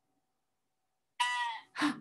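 A single short, high-pitched sheep bleat about a second in, then a brief voice sound.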